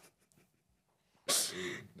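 About a second of near silence, then a sudden breathy burst of laughter from a woman, running into a short voiced laugh.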